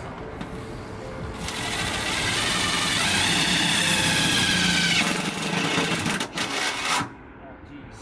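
Cordless drill boring a 9/32-inch hole through a car's sheet-metal fender. The drilling comes up about a second in, runs loud for about three and a half seconds, then drops away, followed by a couple of sharp clicks near the end.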